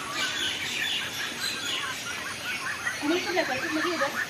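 Wild birds chirping, many short high calls overlapping throughout.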